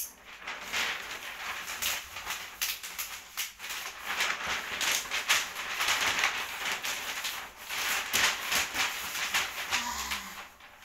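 Sheet of gift wrapping paper rustling and crinkling as it is lifted, flapped and folded over a large box by hand, with a steady run of irregular crackles.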